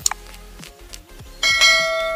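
Subscribe-button animation sound effect: a mouse click at the start, then a bright bell chime rings out about one and a half seconds in and holds. Soft background music runs underneath.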